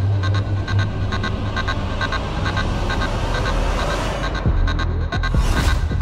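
Background music: an electronic dramatic score with a steady low throbbing drone under a quick even pulse, and tones that sweep up and down near the end.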